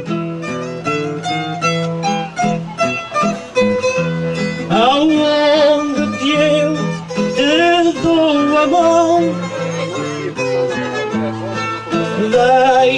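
Acoustic guitar accompaniment playing the instrumental break between improvised verses of a cantoria: a quick run of picked notes, with a melody line that wavers and glides in places.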